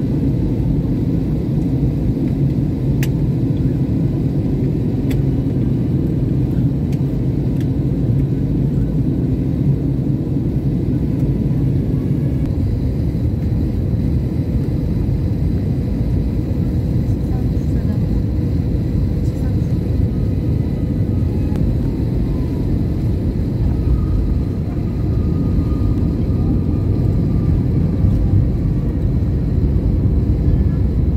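Airliner cabin noise during the final approach and landing: a steady, loud low rumble of the jet engines and airflow heard from a seat by the wing. It dips briefly near the end and then runs a little louder as the plane comes down onto the runway and rolls out with its spoilers raised.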